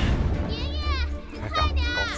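Soundtrack with a steady low drone, over which two high, wavering calls slide downward in pitch, about half a second and one and a half seconds in.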